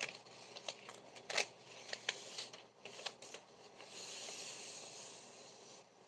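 Faint rustling and crinkling of a strip of paper raffle tickets being handled, with scattered small clicks and a longer soft swish about four seconds in.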